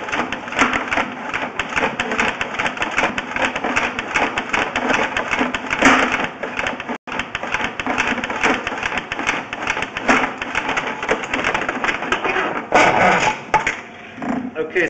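Sewer inspection camera's push cable being pulled back out of the drain line and wound onto its reel, with rapid, uneven clicking and rattling throughout.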